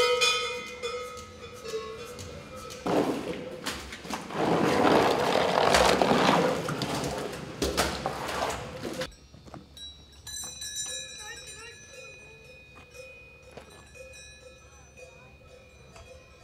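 Cowbells clinking on cattle in a barn, then about six seconds of steady, noisy scraping as manure is shovelled and pushed across a wet concrete stall floor.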